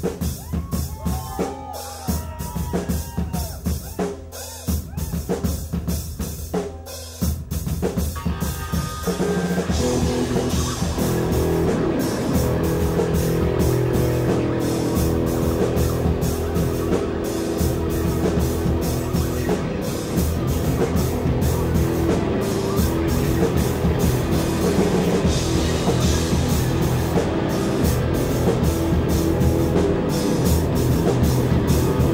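Live rock band starting a song: the drum kit plays alone at first with wavering high tones over it, then about nine seconds in the bass and guitars come in and the music gets louder and fuller.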